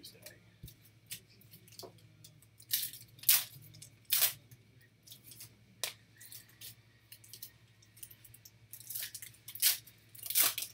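Topps Pro Debut foil card packs being torn open and cards handled: scattered short, sharp tearing and crinkling sounds, loudest about three and four seconds in and again near the end, over a low steady hum.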